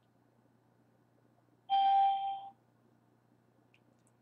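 A single short electronic chime, one steady ringing tone with higher overtones, sounding about two seconds in and fading within a second.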